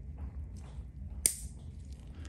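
Steel nail nippers biting through a thick toenail: one sharp snap a little past halfway, after a few faint clicks of the jaws.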